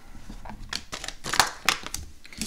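Plastic packaging crinkling and clicking as a plastic vernier caliper is taken out of it: a run of short, sharp crackles, mostly in the second half.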